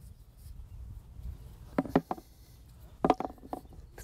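Hard carp-bait boilies snapped apart by hand: two clusters of short, sharp cracks, about two seconds in and again about three seconds in.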